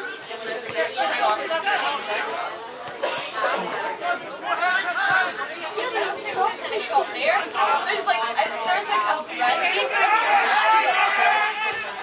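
Chatter of several overlapping, indistinct voices, from players and spectators at a football match.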